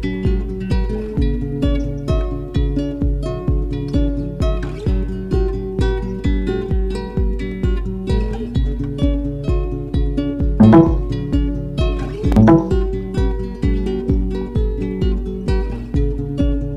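Background music: plucked acoustic guitar over a steady low beat, with two brief louder swells a little past the middle.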